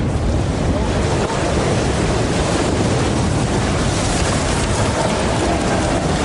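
Giant tunnel boring machine grinding through the last rock of the tunnel face as it breaks through, a loud, steady noise heavy in the low range.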